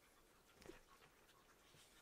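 Near silence: quiet room tone, broken once by a brief faint sound a little over half a second in.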